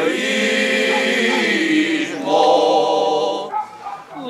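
A men's choir singing cante alentejano unaccompanied, in a Cante aos Reis (Epiphany carol), on long, slowly moving notes in harmony. The voices drop away briefly near the end for a breath.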